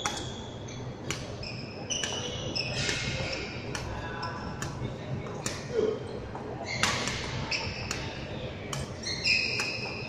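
Badminton rackets striking shuttlecocks in a fast drill, a sharp crack about every half second to a second. Court shoes squeak on the wooden floor between the hits.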